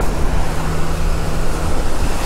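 Loud wind and surf noise with a steady low engine hum from a large truck on the beach; the hum drops away near the end.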